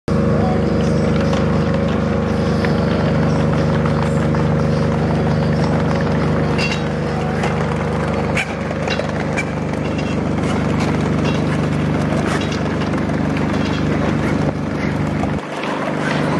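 A steady low drone that holds one unchanging pitch, with scattered faint clicks over it; it cuts off abruptly near the end.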